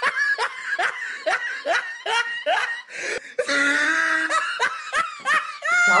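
High-pitched laughter in a run of short falling 'ha' pulses, about two or three a second, with a longer drawn-out stretch midway and a rising note near the end.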